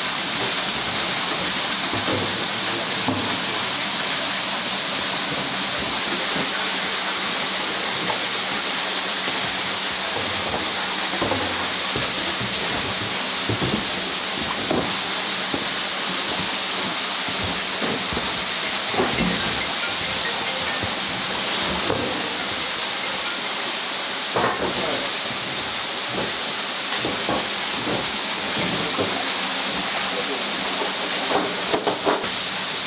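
Steady rush of running water in a koi pond, with a low steady hum underneath and a few light knocks.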